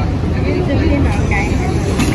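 Airport terminal ambience: a steady low rumble with faint, distant voices.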